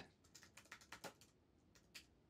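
Faint typing on a computer keyboard: a quick run of key clicks lasting about a second, then a single click near the end.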